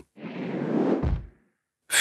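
Whoosh sound effect marking an animated graphic sliding into view: a rush of noise that swells and fades over about a second, with a short low thump near its end.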